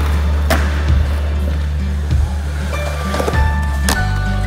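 Background music with a heavy bass line over skateboard sounds: a skateboard popping a nollie onto a ledge and its truck grinding along in a 5-0, with several sharp clacks of the board, the loudest about half a second in and just before the end.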